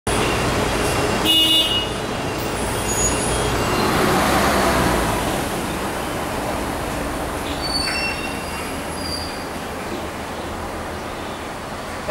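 Mercedes-Benz O405 city bus's diesel engine running with a steady low rumble, swelling about three to five seconds in. Brief high-pitched squealing tones come about a second and a half in and again around eight seconds.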